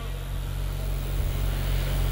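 A steady low hum and rumble with a faint hiss over it, with no speech.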